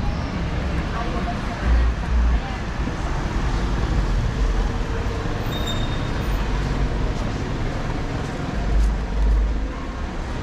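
City street ambience: steady road traffic from passing cars, with indistinct voices of passers-by.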